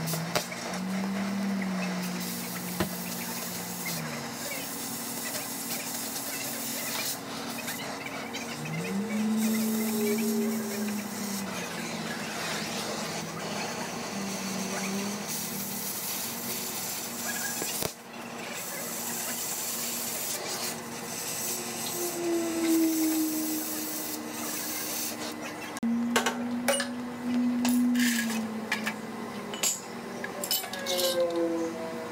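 Oxyacetylene cutting torch hissing steadily as it cuts through the steel frame of a cement mixer. Over the last few seconds there are sharp metal clinks.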